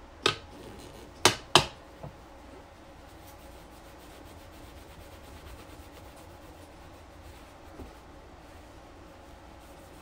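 Microfiber cloth rubbing compound-polish over the clear-coated pewter body of a scale model car, a faint steady scrubbing, the work of taking oxidized haze off the clear coat. Three sharp knocks come in the first two seconds, the third the loudest, with a smaller one just after.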